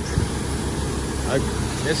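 Diesel dump truck idling close by, a steady low rumble.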